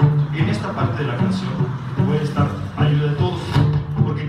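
Acoustic guitar strummed in a steady, repeating rhythm, with sharp accented strokes about once a second.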